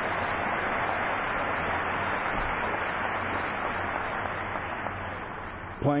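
Large audience applauding steadily, the clapping easing off just before the end.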